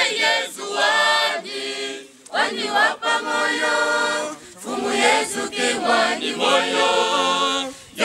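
A church choir of women, men and children singing together in phrases, with short breaths between them about two seconds and four and a half seconds in.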